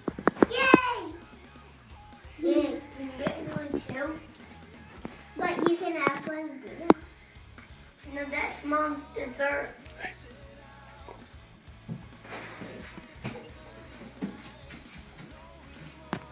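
A small child's voice chattering in short bursts over background music, with a few sharp clicks near the start and about seven seconds in.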